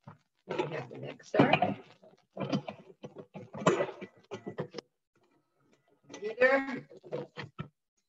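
A person's voice speaking in short stretches with pauses, and a few short knocks near the end.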